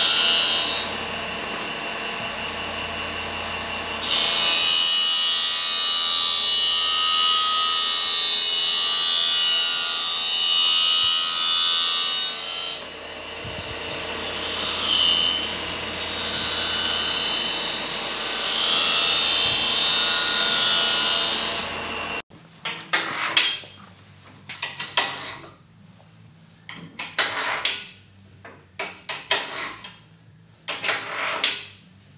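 Reel grinder's abrasive wheel relief-grinding the steel blades of a lawn-mower reel at a 30° relief angle, a loud, steady grinding hiss that eases and swells as the wheel works along the blades. It stops abruptly about 22 seconds in, and short clicks and knocks from hand work on the reel unit follow.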